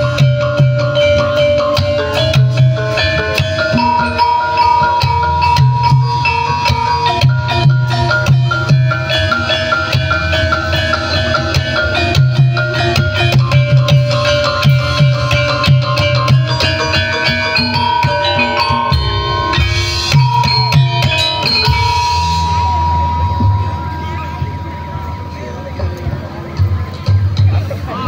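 Live Javanese gamelan accompanying a kuda lumping dance: metallophones play a repeating melody over steady drum beats, with a long held high note on top. The music grows quieter shortly before the end.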